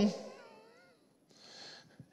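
A man's spoken phrase ending and fading into room reverberation, then a soft breath in about one and a half seconds in.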